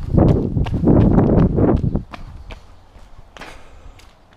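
Running footsteps on asphalt: a quick train of shoe strikes, with a louder rough rumbling noise over them for the first two seconds, after which the steps go on more quietly.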